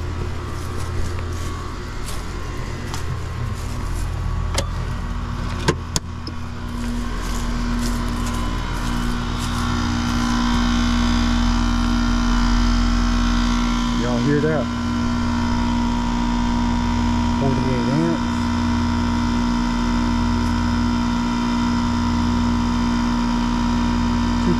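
Air-conditioner condenser starting and running: a sharp click about six seconds in, then the compressor and fan motor hum steadily and grow louder, with a steady higher whine joining about halfway through. The technician takes the noise, with a low amp draw and equal pressures, for a failed compressor that isn't pumping.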